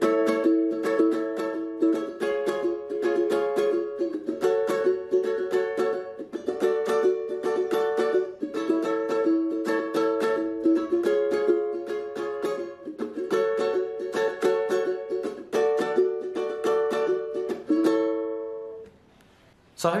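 Tenor ukulele strummed quickly through a repeating progression of barre chords, the chord changing about every two seconds. The playing stops about a second before the end.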